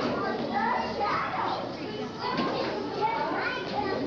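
Several children's voices talking and calling over one another at once, a busy, overlapping chatter of high voices.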